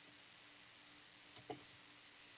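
Near silence: faint room tone with a low steady hum, and one brief faint sound about one and a half seconds in.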